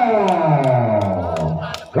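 A man's voice in one long drawn-out call sliding down in pitch from high to low, fading out near the end. A few faint sharp clicks sound behind it.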